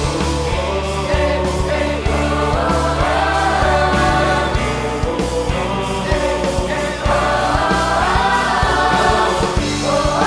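Large choir singing over an instrumental backing track with a steady bass and drum beat.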